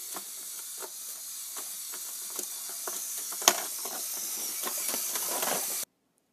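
Electric-motor-driven LEGO walking machine running: a steady high hiss with irregular small clicks and clatters from its plastic gears and legs, and one sharper click about three and a half seconds in. The sound cuts off suddenly just before the end.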